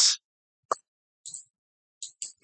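The end of a man's sentence, then silence broken by a brief sharp click a little under a second in and a fainter, shorter one just past a second.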